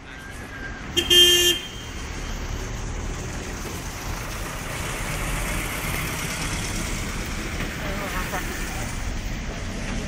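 A short car horn toot about a second in, then steady road traffic and engine noise from slow-moving vehicles close by.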